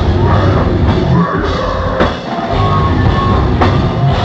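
Hardcore metal band playing live and loud, with a pounding drum kit. About two seconds in a sharp hit is followed by a brief drop, and the full band comes back in half a second later.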